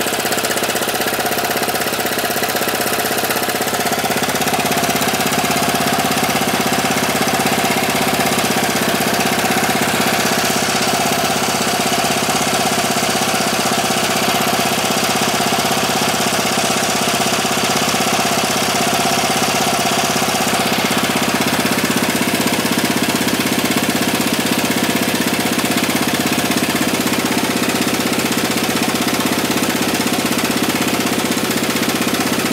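Honda Fusion (MF02) single-cylinder four-stroke scooter engine idling steadily. Blow-by gas is pushing engine oil out of a gap at the top of the engine cover near the engine mount. The shop cannot yet tell whether a cracked crankcase or a lifted engine-cover gasket is the cause.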